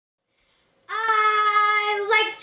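A child's voice singing one long held note, starting about a second in.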